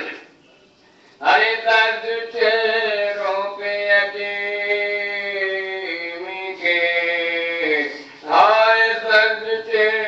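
Male voice chanting soz, an Urdu elegy recited in long held notes that slide in pitch, with a faint steady low hum underneath. The voice breaks off briefly at the start and comes back in about a second in.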